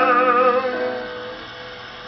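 A 78 rpm record played on an acoustic Columbia Viva-Tonal phonograph: a male singer holds a wavering last note that ends under a second in, leaving the soft piano accompaniment carrying on more quietly. The sound is narrow-range and old-recording thin, with no treble.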